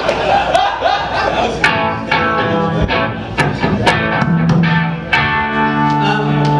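Amplified band instruments on stage, guitar and keyboard, sounding a run of separate ringing chords, each struck and left to ring, from about two seconds in.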